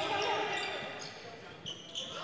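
Faint basketball court sounds in a nearly empty gym: a ball bouncing, with a few short high sneaker squeaks on the hardwood near the end.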